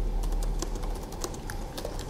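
Typing on a computer keyboard: an irregular run of key clicks, several a second.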